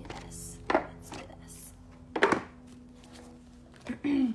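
Hands handling an oracle card deck: a couple of sharp knocks, the loudest about a second and two seconds in, with short rustles between, over a faint steady hum.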